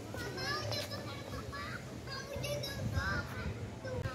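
Young children's high-pitched voices calling and shouting in short bursts while they run and play.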